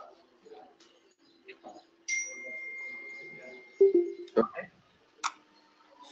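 A single high chime about two seconds in, ringing for about two seconds as it fades, followed by a few short clicks, over a faint low hum.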